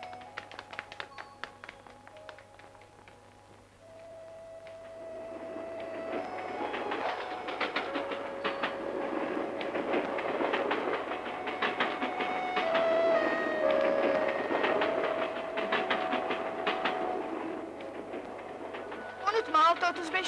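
A train crossing a railway bridge: the rumble and clatter of its wheels builds from about four seconds in, is loudest in the middle, and fades away near the end.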